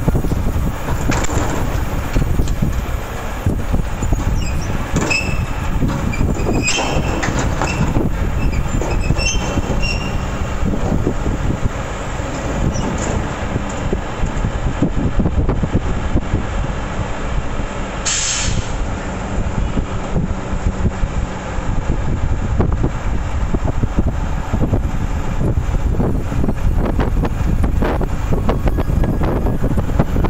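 Rear-loader garbage truck's engine and hydraulic bin lifter running as a large metal bin is tipped and emptied into the hopper, over a steady low rumble. High metallic squeals and clatter come through the first ten seconds, and a short burst of noise sounds a little past halfway.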